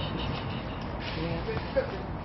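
Faint voices in the background over a steady low rumble.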